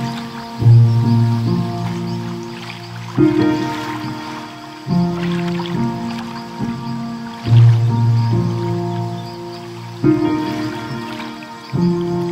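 Slow, calm solo piano: soft chords struck every two to three seconds and left to ring and fade. A faint crackle of a fireplace fire and the wash of ocean waves sit underneath.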